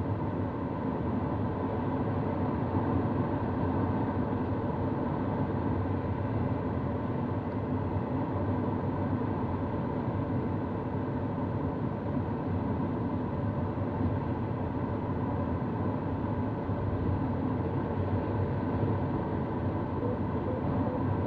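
Steady rush of air over an Antares sailplane's cockpit in flight, an even noise that holds at the same level throughout.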